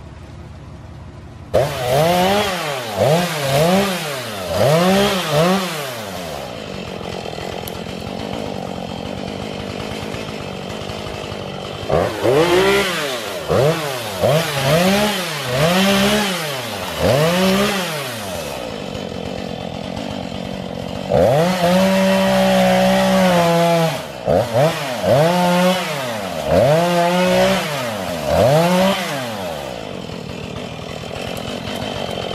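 Gasoline chainsaw being revved over and over, its engine pitch rising and falling about once a second and dropping back to idle between bursts. Around two-thirds of the way through it holds at high speed for a couple of seconds before the revving resumes.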